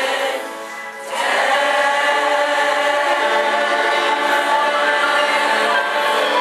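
A choir of women's and girls' voices singing in unison and harmony, with a brief break between phrases just after the start, then long held notes from about a second in.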